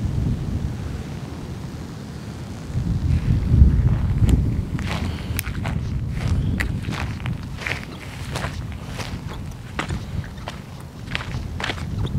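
Footsteps on dry grass and a dirt track, under a steady low rumble. From about four seconds in, the steps come through as a string of crisp crunches, roughly two a second.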